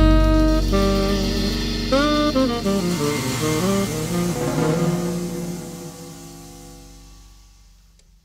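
Jazz quartet of saxophone, upright bass, keyboard and drums playing the closing bars of a tune: a last phrase of moving notes over ringing cymbals, then the final chord fades away to silence near the end.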